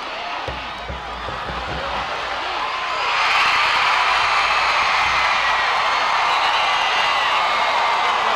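Football stadium crowd cheering and yelling. The noise swells sharply about three seconds in and stays loud, a reaction to a tackle on the field.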